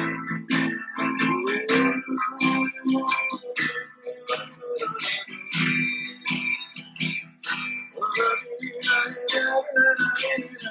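Acoustic guitar played solo in a fast, even run of strums and picked notes, with no singing.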